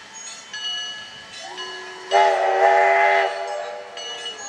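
Electric railway car's horn sounding a single blast: a soft start, then about a second of loud, steady tone, a little past the middle.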